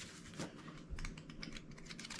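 Faint rustling and light clicking of a stack of metallic glitter cardstock being handled and fanned, the stiff sheets flicking against one another.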